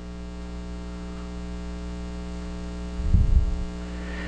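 Steady electrical mains hum in the recording, with a brief low rumble about three seconds in.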